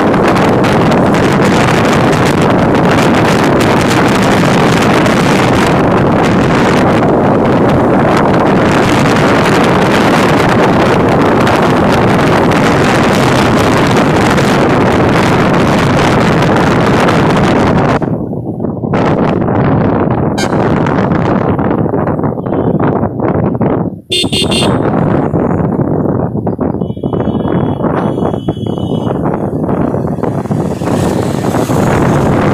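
Wind buffeting the microphone on a moving motorcycle, a dense steady rush that eases and turns gusty about two-thirds of the way in. Vehicle horns toot briefly a couple of times near the end.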